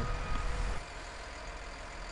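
Bulldozer's diesel engine idling, a steady low rumble heard inside the cab, dropping in level a little under a second in.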